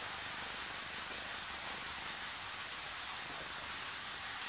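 Steady faint hiss of room tone with no distinct sounds in it.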